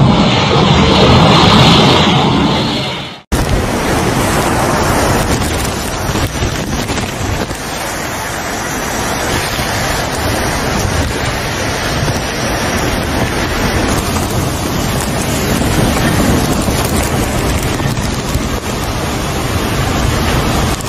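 Strong storm wind and heavy rain, with the wind buffeting the microphone: a steady rushing noise. It cuts out abruptly for a moment about three seconds in, then resumes a little quieter.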